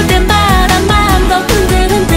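K-pop dance song: electronic pop music with a steady beat and a sung melody.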